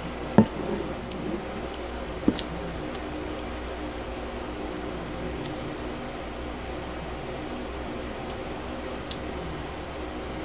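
Mouth sounds of eating a nori-wrapped cucumber and crumbed chicken sushi roll: two sharp clicks in the first few seconds, then quiet chewing over a steady low hum.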